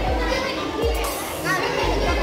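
Children's voices and chatter in a busy indoor hall, over background music with a deep bass line.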